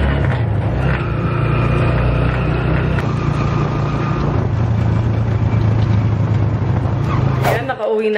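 Engine and road noise of a moving passenger vehicle heard from inside it: a loud, steady low drone that cuts off suddenly just before the end.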